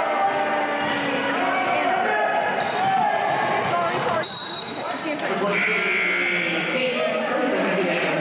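Basketball game in an echoing gym: crowd and bench voices and shouting with a basketball bouncing on the hardwood, and a short, high referee's whistle about four seconds in.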